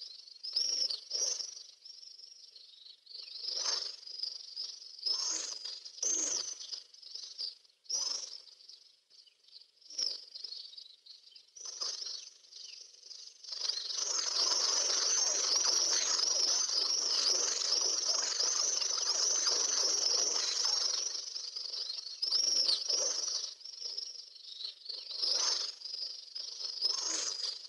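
Small birds chirping in short, broken bursts, then a dense flock twittering without a break for several seconds past the middle, thinning again toward the end.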